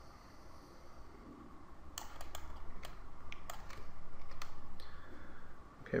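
Several short sharp clicks from a computer mouse and keyboard at a desk, scattered through the middle of the stretch over a faint low room hum.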